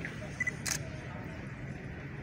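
A camera's short double focus beep, then a single shutter click about a quarter second later, over a steady low room murmur.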